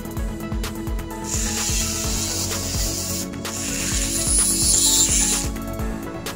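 A small pen-style rotary tool grinding on a small metal wire terminal: a high hiss of abrasion in two passes, the first about a second in and the second just after, broken by a short gap. Background music with a steady beat plays throughout.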